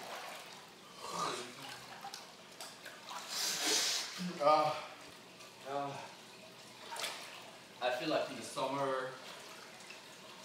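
Water sloshing and splashing in a small pool around people sitting in it, with a louder splash about three and a half seconds in. Low talk comes in short stretches.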